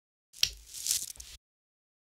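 A quarter-inch guitar cable jack being pushed into a pedalboard's input socket: a sharp click, then about a second of scratchy crackle and hiss that cuts off abruptly.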